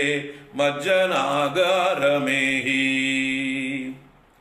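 A man's voice chanting a line of a Sanskrit verse in a melodic recitation. There is a brief break about half a second in, and the line ends on a long held note that stops just before the end.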